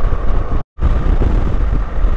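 Wind rushing over the camera microphone on a moving BMW R1200GS Adventure, with the low running of its boxer-twin engine underneath. The sound cuts out completely for a moment about two-thirds of a second in.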